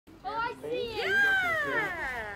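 A child's high-pitched voice calling out, a drawn-out cry that climbs in pitch about a second in and then slides slowly down.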